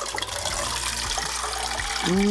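Thin stream of water pouring steadily out of the small spout of an upturned plastic pet drinking bottle into a bowl of water, a steady trickling splash as the bottle drains.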